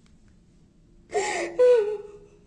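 A woman crying. About a second in come two gasping sobs close together, the second a wavering cry that falls in pitch.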